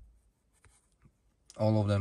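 Two faint clicks of a computer pointer button as checkboxes are ticked in a settings dialog, then speech begins about one and a half seconds in.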